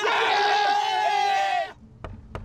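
A man's loud, high-pitched exclamation held on one wavering note for about a second and a half, then cut off suddenly.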